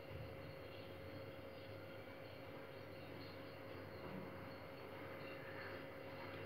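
Faint steady room tone with a thin, constant hum and no distinct sounds.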